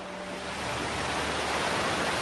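Ocean surf: a large wave breaking, its rushing, hissing noise building up over the two seconds.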